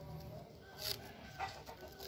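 Faint crinkle of plastic grafting tape being handled and pulled around a grape graft, with short crackles about a second in and again shortly after. Faint bird-like calls sound in the background.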